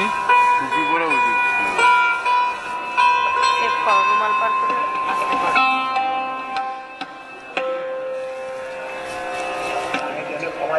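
Sarod playing a slow melodic passage: plucked notes that slide and bend in pitch, over long-ringing sustained strings. A new, lower held note enters near the end.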